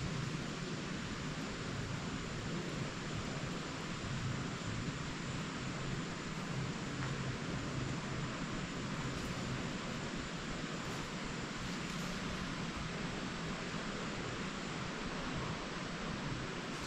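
Steady, even outdoor background hiss with nothing standing out, and a faint thin high tone that fades out about three-quarters of the way through.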